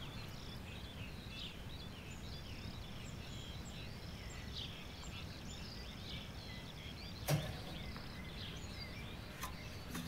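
Many small birds chirping and twittering over a low outdoor rumble. A single sharp knock sounds about seven seconds in, and a fainter click follows near the end.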